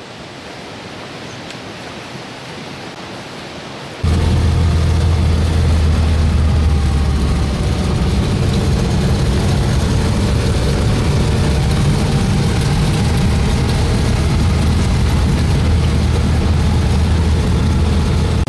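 Steady engine drone and road noise heard from inside a moving vehicle. The sound starts abruptly and loudly about four seconds in, after a stretch of quieter hiss.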